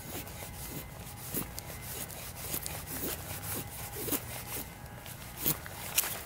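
Knife blade shaving curls down a wooden stick to make a feather stick, a short scraping stroke about every half second, one louder stroke near the end.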